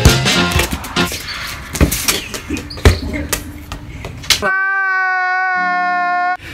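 Music with a few sharp knocks. About four and a half seconds in, a meme sound effect cuts in: a long, steady, held crying wail lasting about two seconds, which stops suddenly.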